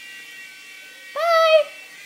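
Small remote-control toy helicopter's electric motor, a steady thin whine. About a second in, a person gives a short, high cry of about half a second, the loudest sound here.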